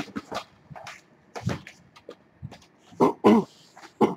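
A dog giving two short, pitched cries in quick succession about three seconds in, over a few faint clicks.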